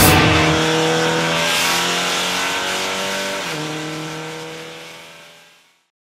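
Seat Leon Supercopa race car engine heard from inside the car, running at fairly steady revs with a step in pitch about three and a half seconds in, fading out to silence near the end.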